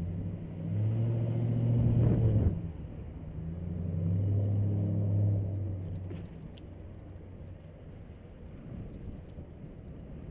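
Two motor vehicles pass close by the bicycle one after the other, their engines droning. The first cuts off sharply about two and a half seconds in and the second fades out about six seconds in, leaving a low rush of wind and road noise.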